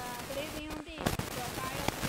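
A woman talking, not in English, over a dense, irregular crackle of short clicks.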